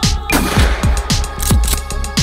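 A single pump-action shotgun shot about a third of a second in: a sudden blast that trails off over about half a second. It sounds over electronic music with a steady beat of deep, falling bass-drum hits and ticking hi-hats.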